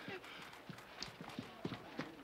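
A few faint, irregular knocks and taps, spaced unevenly through the second half.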